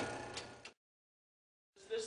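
Faint background hum and a couple of clicks fade out, then about a second of dead silence from an edit cut before the sound fades back in near the end.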